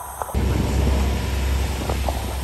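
Steady rush of wind and water with a deep rumble, heard aboard a boat crossing choppy open sea; it jumps suddenly louder about a third of a second in.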